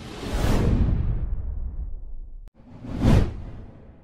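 Two whoosh sound effects for an animated title graphic. The first is long, swells and fades, and cuts off abruptly about two and a half seconds in. The second is shorter, peaks about three seconds in and dies away.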